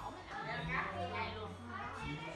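Speech only: several people talking over one another in lively table conversation.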